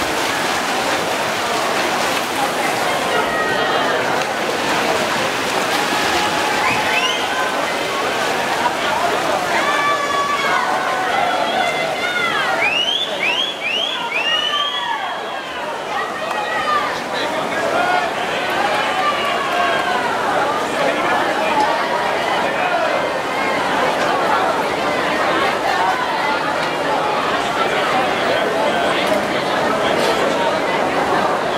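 Spectators cheering and shouting for swimmers in a freestyle race, a steady din of many voices with a burst of high shrill yells around the middle, over splashing from the pool.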